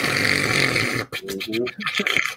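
Men laughing: a breathy, hissing laugh for about a second, then short voiced bursts of laughter.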